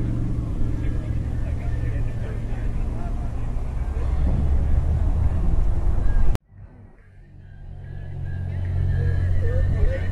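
Steady low rumble with faint voices in the background. It cuts out abruptly with a click about six seconds in and fades back up over the next couple of seconds.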